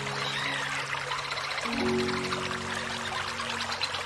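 Soft music of held low chords, changing about two seconds in, over the steady rush of a small stream of water pouring over rocks.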